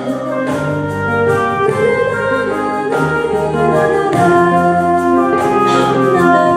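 Live folk band playing an instrumental passage, with a clarinet playing the melody in long held notes over acoustic guitar accompaniment.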